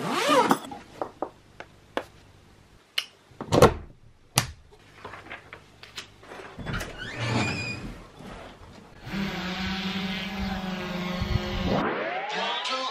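Handling noises: knocks and clicks as a hard-shell GoPro Karma case is worked open. From about nine seconds in, a steady pitched hum sets in suddenly, the sound of a drone's rotors in flight.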